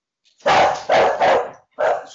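A cockapoo barking loudly, several barks in quick succession starting about half a second in.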